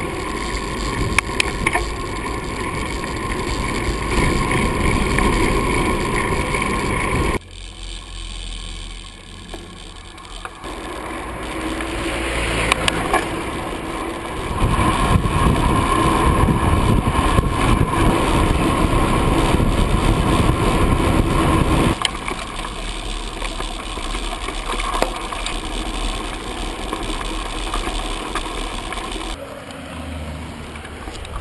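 Wind rush and road noise on a bicycle-mounted action camera while riding, with occasional rattles and clicks from the bike. The sound changes abruptly several times.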